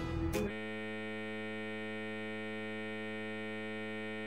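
A steady electrical hum with many overtones, even and unchanging, starting about half a second in after a brief tail of music.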